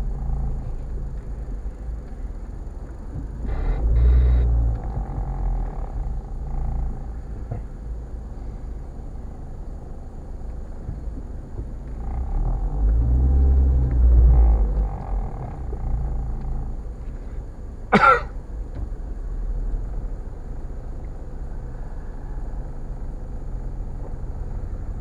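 Car engine and road rumble heard from inside the cabin in stop-and-go traffic, swelling twice as the car pulls forward a little. A single short, sharp sound cuts in about three quarters of the way through.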